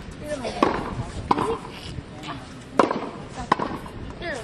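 Tennis ball bounced on a hard court before a serve: four sharp knocks, in two quick pairs.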